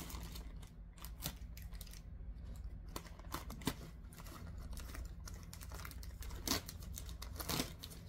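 A bag being opened and rummaged through by hand: faint crinkling and scattered light clicks and rustles over a low, steady hum.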